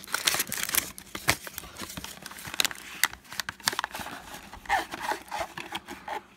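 A 2016 Topps Bunt baseball card pack's wrapper being torn and crinkled open by hand: a steady run of irregular crackles and tearing.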